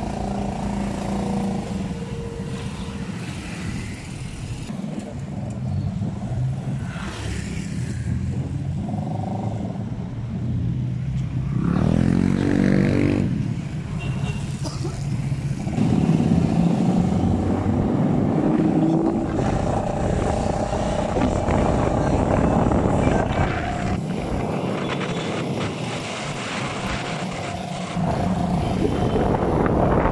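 Motorcycle engine running while riding through city traffic, with road and wind noise and other vehicles passing. The engine pitch rises and falls briefly about twelve seconds in, and the traffic noise gets louder from about sixteen seconds on.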